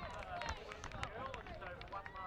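Faint, distant voices of young players calling out on an open field, with light outdoor background noise.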